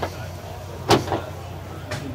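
A sharp click about a second in, and a fainter one near the end, from a boat's cockpit hardware being handled: a flush deck-hatch latch being worked, over steady background noise.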